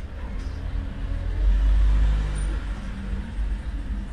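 A low rumble with a droning hum underneath, swelling about a second and a half in and easing off after a second or so.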